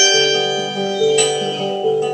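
Acoustic guitar strumming chords under a violin playing the melody of an instrumental break in a folk song, with fresh strums at the start and about a second in.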